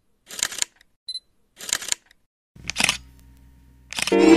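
A camera's shutter releasing three times, about a second apart, with a short high focus beep before the second release. A faint steady hum follows near the end.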